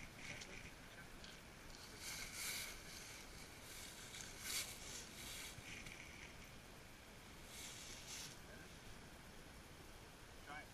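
Quiet outdoor background hiss with a few short, soft rustling bursts, the loudest about halfway through.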